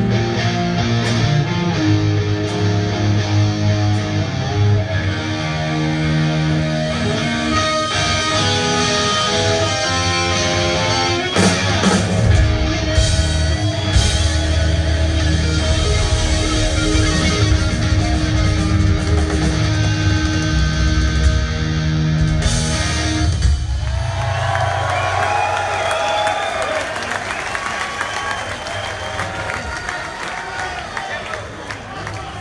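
Live hard-rock band with distorted electric guitar, bass and drums playing loud, heard through a phone microphone from the audience. The band stops about three-quarters of the way in, and crowd cheering and whistling follows.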